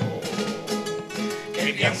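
Spanish guitars strumming a carnival chirigota's pasodoble in an even rhythm between sung lines. A male voice starts singing near the end.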